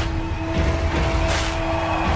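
Countdown intro sound design: a deep steady rumble under a held tone, with a swelling whoosh about a second in.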